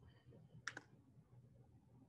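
Near silence: faint room tone, with one quick double click about two-thirds of a second in.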